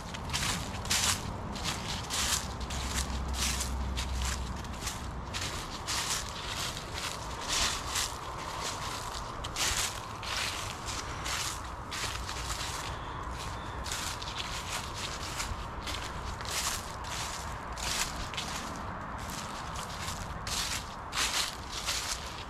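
Footsteps crunching through dry fallen leaves at a steady walking pace, each step a short crackle, about two a second.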